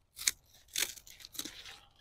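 Galangal stalks and leaves rustling as they are pulled and broken off, in three or four short bursts.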